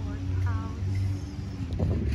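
A vehicle engine running steadily in street traffic, a low even hum, with a brief voice about half a second in.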